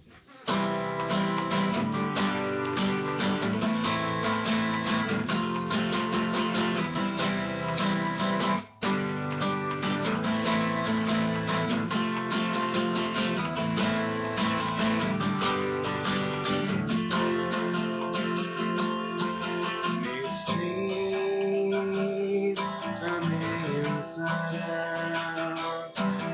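Acoustic guitar strummed in a steady rhythm, playing a song's instrumental intro before the vocals come in. It starts about half a second in and cuts out briefly about a third of the way through.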